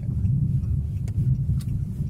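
Steady low rumble of a car's engine and tyres heard from inside the cabin while driving on a snow-covered road, with two faint clicks in the second half.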